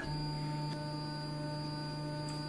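LulzBot TAZ 6 3D printer's stepper motors and fan running with a steady whine of several held tones that start abruptly at the beginning, as the print head moves down to home its Z axis.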